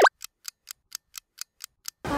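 Clock-ticking sound effect, about four sharp ticks a second, opened by one short loud hit whose pitch falls.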